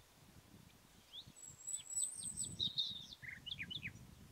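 A small songbird singing a quick series of high, downslurred notes, starting about a second in and running nearly to the end, with a thin high whistled note above the first part. Wind rumbles on the microphone underneath.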